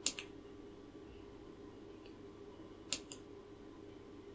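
Light clicks from a finger handling the insect killer's small circuit board, one pair at the start and another about three seconds later, over a faint steady hum.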